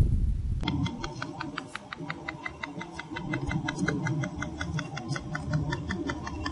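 PEMF therapy machine pulsing through a figure-eight loop wrapped around a horse's leg joint: an even train of clicks, about seven a second, starting about a second in over a low hum. Its pitch is what the treatment listens for: a deeper sound suggests the joint is absorbing more energy.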